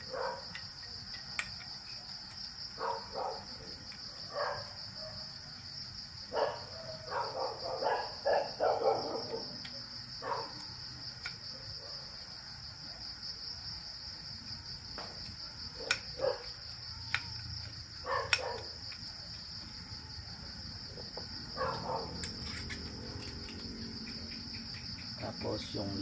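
Crickets chirping in a steady high trill, over scattered clicks and light knocks of small gun-receiver parts being handled and fitted by hand. The handling is busiest about a third of the way in, with a couple of sharp clicks later.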